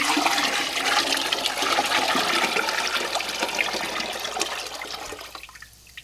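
Sodium carbonate solution being poured from a bucket into a glass aquarium partly full of water, filling an electrolysis bath. The steady splashing pour fades gradually and stops about five and a half seconds in.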